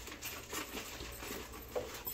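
Cardboard shipping boxes and plastic packaging being handled and opened: quiet rustling with a few light taps and knocks.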